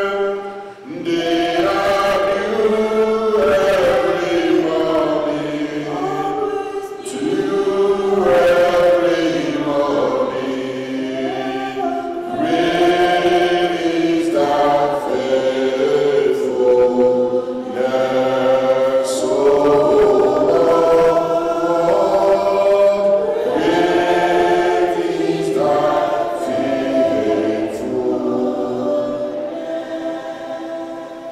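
Slow hymn singing, a man's voice into a microphone with other voices joining in, on long held notes. The singing pauses briefly just under a second in.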